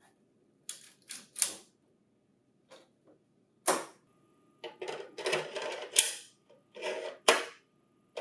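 A series of plastic clicks, knocks and scrapes from a staple cartridge holder being pushed into a printer finisher and the finisher's plastic front door being shut. There are a few light clicks in the first two seconds, then louder knocks and snaps, the sharpest near the end.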